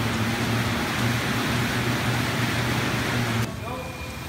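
Assault air bike's fan wheel whooshing as it is pedalled hard, a steady rush of air with a low hum underneath. It cuts off suddenly about three and a half seconds in.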